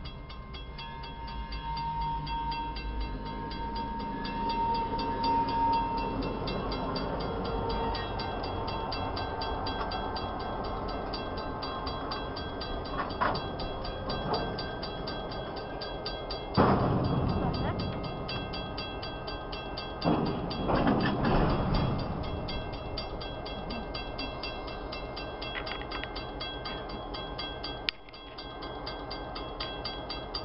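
Diesel freight locomotives running by, their engines rumbling steadily under a fast, even ticking. The sound swells loudly about halfway through and again a few seconds later.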